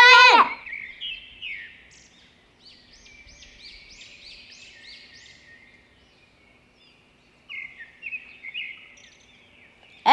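Faint bird chirps: a run of short, repeated high calls in the middle, and a few more near the end.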